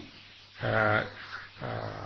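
A man's voice uttering two brief drawn-out syllables, the first about half a second in and a weaker one near the end, at the pitch of the monk preaching on either side.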